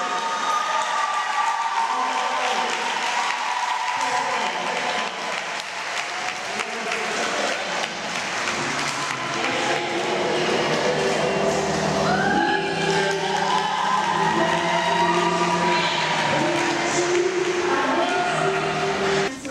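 An audience applauding, with music coming in about halfway through: steady held notes over the continuing clapping.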